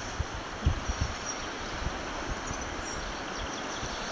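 Outdoor ambience: wind buffeting the microphone in uneven low gusts over a steady rushing hiss.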